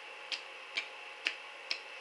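Fingers tapping on puffed-out cheeks, four short, evenly spaced taps, about two a second.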